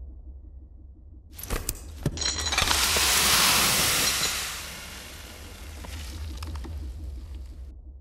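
A few knocks about a second and a half in, then a load of salt dumped from an overhead bucket pours down onto an umbrella and the floor as a loud, even hiss that slowly tails off.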